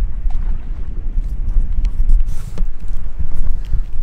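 Wind buffeting the microphone: a steady low rumble, with a few faint ticks.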